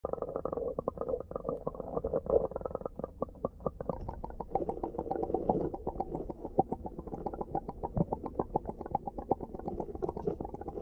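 Water heard through a submerged camera: a muffled gurgling wash with dense crackling clicks. About four seconds in, with the camera at the water's surface, the sound turns brighter.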